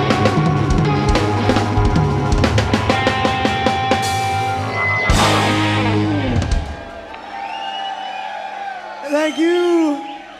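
Live rock band of drums, electric guitars, bass and keyboards playing the last bars of a song. The song ends with a final crash between about five and six and a half seconds in. The crowd then cheers, with a loud whoop near the end.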